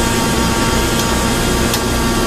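Onan 4,000-watt generator running steadily, a constant engine hum with several held tones.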